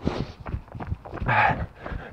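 A jogger's running footsteps on a dirt path, a steady run of soft thuds, with his hard breathing; one loud breath comes about one and a half seconds in.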